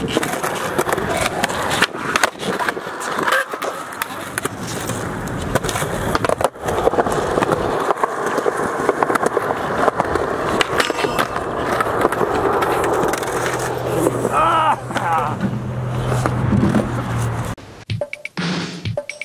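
Skateboard wheels rolling on concrete, with repeated sharp clacks as the board is popped, lands and hits the rail. The sound cuts off abruptly just before the end.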